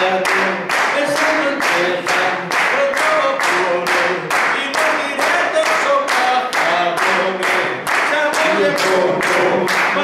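Steady rhythmic hand-clapping at about three claps a second, keeping time, with a group of voices singing a melody along with it.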